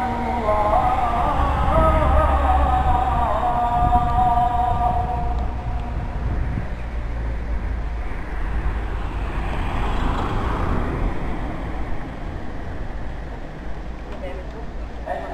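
A muezzin's call to prayer (ezan) sung outdoors, one long, held, ornamented phrase that ends about five seconds in. Then there is a pause in the call, filled by a low rumble of street traffic, with a vehicle passing about ten seconds in.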